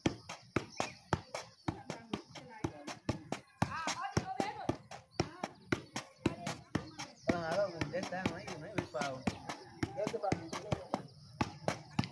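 Football being juggled with the feet: a quick, steady run of light taps as the ball is kept off the ground, with voices talking in the background.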